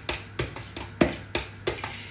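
Whisk stirring dry flour breading in a bowl, knocking against the bowl's sides in a run of irregular clicks, the loudest about a second in.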